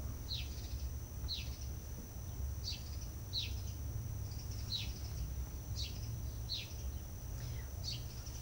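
A bird chirping repeatedly: short, high, downward-sliding chirps roughly once a second, over a steady low hum.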